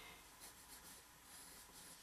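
Faint scratching of a graphite pencil drawing lines on paper.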